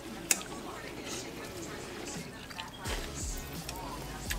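Background music over noodle-eating sounds: wet slurping and scooping of pho broth and noodles, with one sharp knock of a spoon against a glass bowl near the start.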